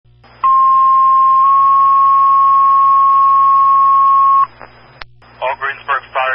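Fire dispatch paging tones over a radio channel: a steady beep of about a second that steps straight into a slightly higher tone held for about three more seconds, the two-tone alert that sets off the fire companies' pagers. A short click follows, then the dispatcher starts speaking near the end.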